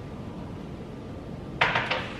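Quiet room tone, then a short, sharp knock about one and a half seconds in, typical of a cut-crystal glass vase being picked up or set against a counter.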